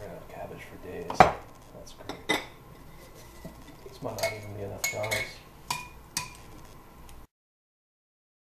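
A utensil knocking and clinking against a stoneware fermenting crock and a glass jar as sauerkraut is scooped out and packed. There is one sharp knock about a second in, another a second later, and a run of clinks and scraping from about four to six seconds. The sound cuts out abruptly shortly before the end.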